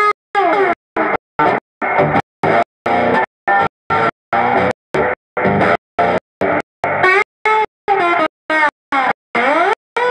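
Electric guitar playing blues through a Yamaha E1005 analog delay into an Ampeg Gemini I amp, with notes sliding up and down in pitch. The sound drops out briefly about twice a second.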